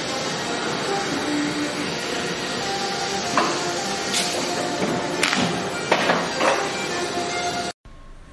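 Factory guillotine cutter working on a stack of corrugated polypropylene sheets: steady machine and workshop noise with several sharp knocks from about three seconds in, cutting off suddenly near the end.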